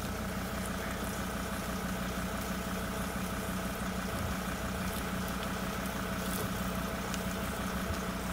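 A vehicle's engine idling with a steady, even hum.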